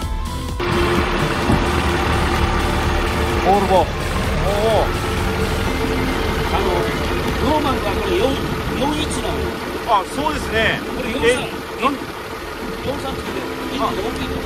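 Volvo Penta KAD43P marine diesel, a four-cylinder with turbo and supercharger, running steadily in its open engine bay. Its low rumble sits under voices and background music.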